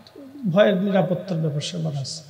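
Speech only: a man preaching into microphones in a drawn-out delivery, his pitch rising and falling in long, smooth glides.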